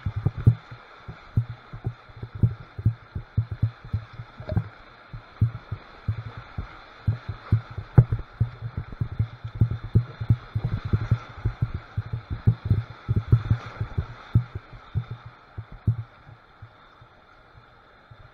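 Irregular low thumps, several a second, as a kayak bounces through whitewater rapids and water slaps and knocks against its hull, over a faint rush of water. The thumps thin out near the end as the water calms.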